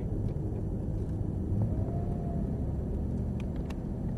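A Cadillac CTS-V's V8 at low speed, heard from inside the cabin as a steady low rumble with road noise.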